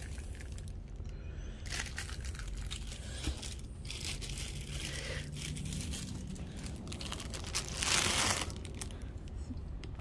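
Clear plastic packaging crinkling and rustling as it is handled, with a louder rustle about eight seconds in.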